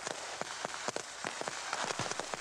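Rustling and crackling of movement through woodland undergrowth: a steady hiss broken by many small, irregular clicks.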